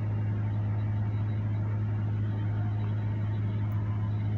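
A steady low hum with a faint even hiss, unchanging throughout.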